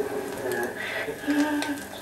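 A stage recording played from a vinyl record through a Rigonda radiogram's loudspeaker, in a pause in the dialogue. A faint nightingale-song sound effect sits over steady clicks and crackle from the record surface.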